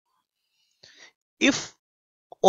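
Near silence, then a faint, short intake of breath just under a second in, followed by a man's voice saying the word "if".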